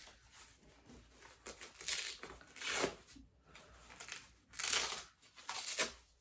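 Hook-and-loop (Velcro) straps of an elbow brace being peeled open, several short rasping rips.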